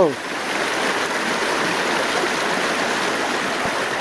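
Shallow creek water rushing steadily over and between boulders in a rocky riffle.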